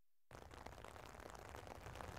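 Near silence: the sound drops out completely for the first moment, then a faint steady hiss of background noise.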